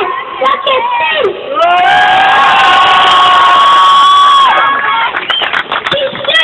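A boy shouting into a microphone through a loudspeaker: a few quick words, then one long held shout lasting about three seconds, with a crowd cheering.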